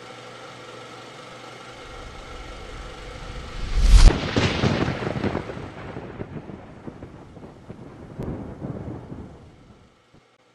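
Cinematic logo sound effect: a steady drone that builds into a loud, deep impact about four seconds in, then a noisy tail that swells again near the end and fades out.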